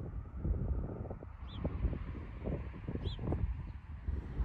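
Wind buffeting the microphone, with two short, high bird chirps about a second and a half and three seconds in.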